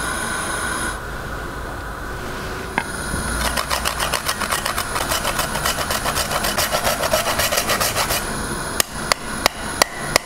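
A whole spice rasped on a flat fine metal grater in quick, even strokes, about five a second for several seconds, followed by a few sharp taps near the end.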